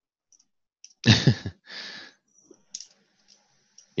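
A short, loud non-speech vocal sound from a person at the microphone about a second in, such as a cough or throat-clear, followed by a softer breath. After that come a few faint scattered clicks, typical of a computer mouse being clicked.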